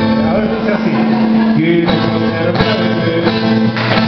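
A live band playing a cumbia medley, with electric bass and drum kit.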